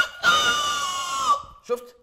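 A long, shrill, very high-pitched cry held steady for about a second, then a few low spoken syllables near the end.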